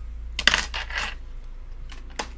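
Makeup items being handled: a short clatter of small hard objects about half a second in, lasting about half a second.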